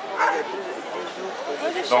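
Dogs giving short high-pitched calls that rise and fall in pitch, over the murmur of people talking.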